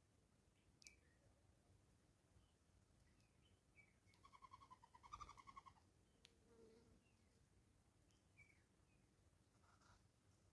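Faint outdoor birdsong. About four seconds in comes a quick pulsing trill lasting about a second and a half, the loudest sound here, with a few brief chirps and small clicks scattered around it.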